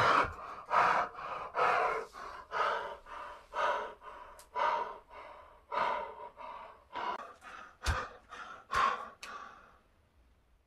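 A man panting hard from exertion after a set of push-ups: loud, noisy gasping breaths about once a second. Two short sharp knocks come near the end.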